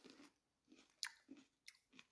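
Near silence with a few faint, short mouth clicks and lip smacks in a pause between speech.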